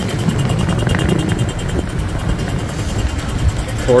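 City street ambience: a steady low rumble of road traffic passing close by, with no single event standing out.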